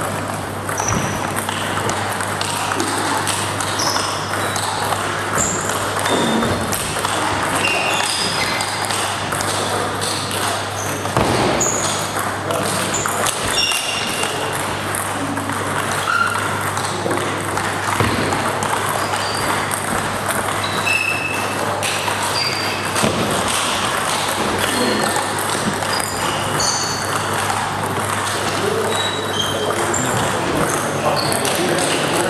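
Table tennis balls clicking off tables and rackets in rallies: many short, irregular pings. Play at the neighbouring tables adds to them.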